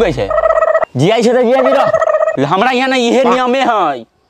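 A person's voice making a loud, drawn-out, wavering call in two long stretches, with a short break a little before one second in.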